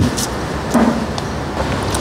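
Steady background rumble of road traffic, with a short hum from the eater's closed mouth about three quarters of a second in.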